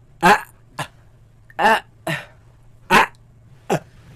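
A man's voice repeatedly sounding the Arabic letter hamza: about six short, clipped 'a' syllables, each started and cut off by a glottal stop at the bottom of the throat, a few of them barely voiced.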